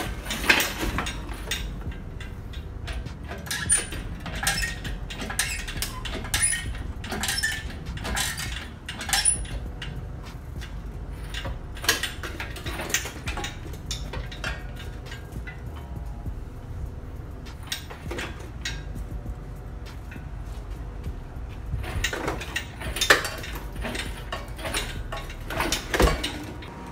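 Scattered metallic clanks and clinks as the engine and shop hoist are worked to pull the engine out of the car, over a steady low rumble. The knocks come thickest in the first several seconds and again in a cluster near the end.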